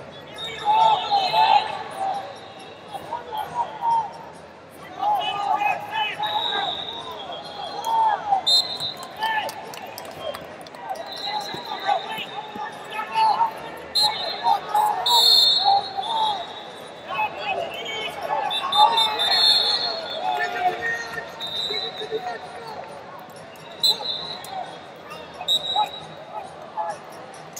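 Coaches and spectators shouting across a large echoing hall during a wrestling bout, with wrestling shoes squeaking on the mat now and then.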